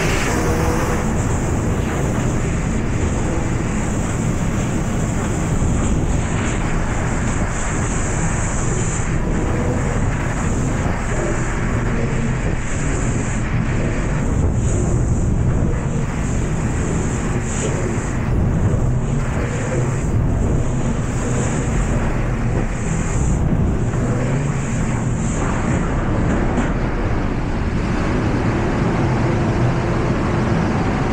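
Schwartmanns Ultra-Cut laser cutting machine cutting sheet metal: a loud, steady rushing noise with a low rumble, and a high hiss that starts and stops many times as the cutting head works through the part.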